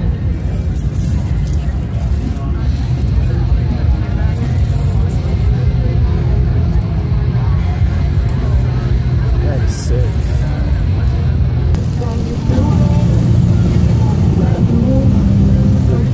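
Indistinct voices over a continuous low rumble.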